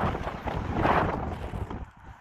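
Wind buffeting the microphone in uneven gusts, easing off near the end.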